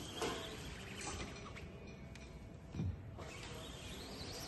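Squeegee drawn across a silkscreen, spreading a layer of screen-printing ink over the mesh: a faint scraping, with a brief low sound about three-quarters of the way through.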